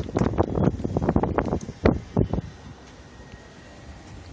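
Wind buffeting a phone's microphone outdoors, in irregular gusts for the first couple of seconds, then easing to a steadier low rumble.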